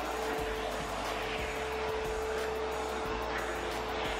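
Vacuum cleaner running steadily with a constant whine as its hose and T-shaped floor tool are worked over carpeted stairs.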